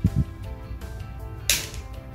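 Background music of sustained notes, with a brief hiss about a second and a half in.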